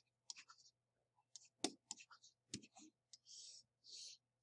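Faint taps and clicks of a stylus writing on a pen tablet. About three seconds in come two longer soft scratches as a line is drawn.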